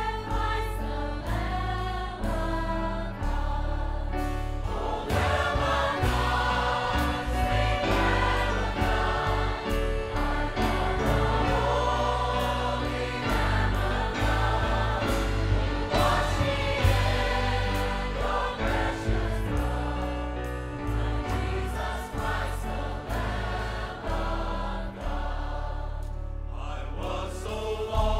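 Large mixed church choir singing a gospel hymn with instrumental accompaniment that includes violins, over a steady bass.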